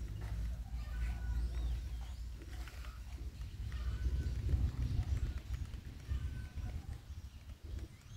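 Wind rumbling unevenly on the microphone outdoors, with a few faint, short high chirps from birds or hens.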